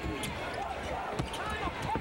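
Basketball game play in a large arena: the ball bouncing on the hardwood court over steady crowd noise, with a few short sharp knocks.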